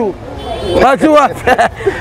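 A man talking loudly outdoors, with street traffic noise, a vehicle going by, filling a short gap in his voice at the start before he resumes speaking.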